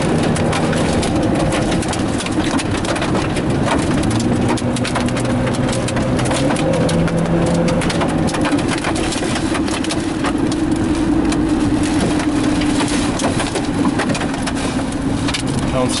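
Wind-driven rain beating on a moving car, heard from inside the cabin as a loud steady noise full of fine crackles, over engine and road noise with a low hum that shifts pitch a few times.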